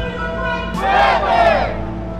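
A huddled group of people shouting a team chant together, one loud unison shout about a second in, over a soft steady music bed.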